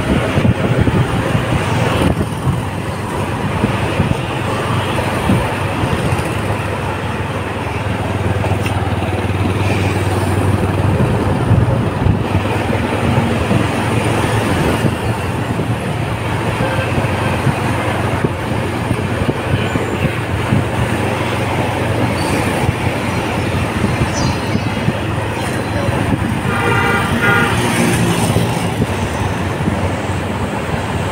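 Motorbike engine and road noise heard from on the moving bike, with a low steady hum throughout. A vehicle horn sounds briefly a few seconds before the end.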